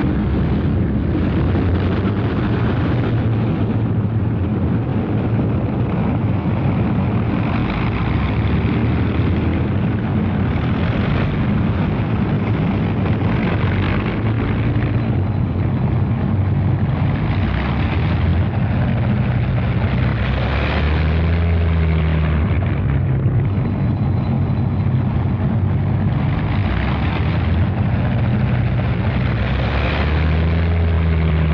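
Several Avro Lancaster bombers' four-engine, Rolls-Royce Merlin propeller drone as the aircraft taxi on the airfield. The loud, steady drone swells and fades as individual aircraft pass close by.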